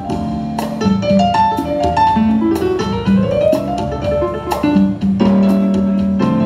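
Live Latin jazz band playing with no singing: keyboard carrying the melody with runs of notes over electric bass, drums and hand percussion.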